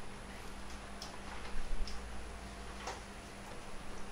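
Quiet room tone with a steady low hum and a few short, light clicks.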